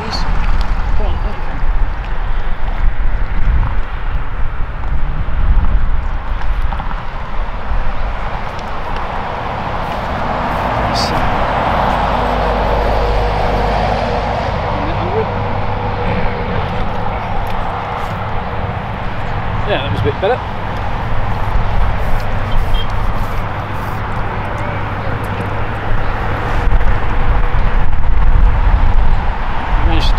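Road traffic passing close by, swelling louder for a few seconds near the middle, over a constant low rumble.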